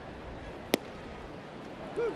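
A 97 mph fastball popping into the catcher's mitt for strike three: one sharp, short crack about three quarters of a second in, over a steady ballpark crowd murmur.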